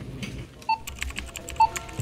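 Computer-keyboard typing: a fast run of clicks starting about a second in, with two short electronic beeps.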